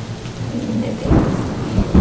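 A faint steady hiss, then a low rumble that starts about a second in and grows louder.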